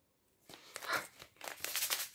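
Bath-salt packaging crinkling and rustling in a run of short bursts as it is handled, starting about half a second in.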